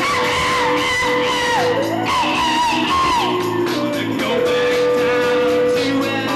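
Live rock band playing, with a singer's voice bending up and down in pitch over the band and a long held note underneath.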